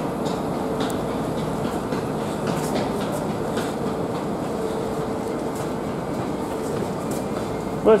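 Steady hum and rumble of railway coaches standing at a station platform, with a faint steady tone running under it.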